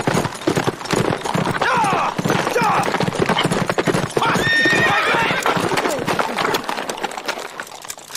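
Hooves of several horses clip-clopping on a paved street, with a few whinnies among them; the hoofbeats fade near the end.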